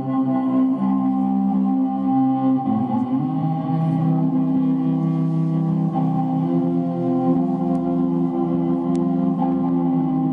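Cello bowed in long sustained notes, moving to new pitches about three seconds in.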